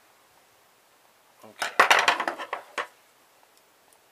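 A clatter of metal hand tools and small metal parts on a wooden tabletop, starting about a second and a half in and lasting just over a second: a rapid run of clinks and knocks as a screwdriver is put down and pliers are picked up.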